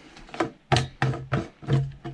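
Black plastic screw cap on a Hitchman Aquaroll water barrel being unscrewed by hand: a series of about six short creaking clicks from the threads, roughly three a second, with a low resonance from the hollow plastic drum.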